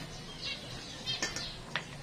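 Black plastic slotted spoon and spatula tossing shredded squash and carrots in a stainless steel bowl: a few light clicks and scrapes of plastic against the bowl and the vegetables.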